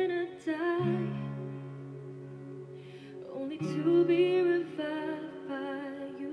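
A woman singing a delicate ballad with soft instrumental accompaniment, her held notes wavering with vibrato near the start and again from about three and a half seconds in.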